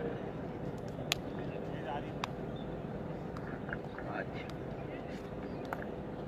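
Steady murmur of spectators and distant voices around a cricket ground, with a few sharp clicks about one second in, two seconds in and near the end.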